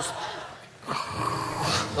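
A man imitating a power saw with his voice: a raspy buzzing noise held for about a second, starting about a second in.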